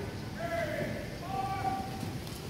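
A person's voice calling out in long, drawn-out tones, the first falling slightly and the second held steady, over the low hubbub of a crowd in a large hall.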